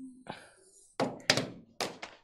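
Marker knocking against a whiteboard while writing: three short, sharp knocks, the first about a second in, then two more less than half a second apart.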